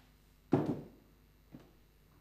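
A single heavy thump about half a second in, as a person steps up onto a metal-framed chair, followed by a fainter knock about a second later.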